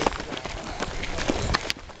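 Footsteps of several runners on a gravel trail as they jog past: an irregular patter of steps.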